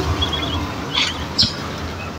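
Street traffic with a low rumble as a car drives past, with a quick run of short high chirps early on and two brief high squeaks about a second in and a half-second later.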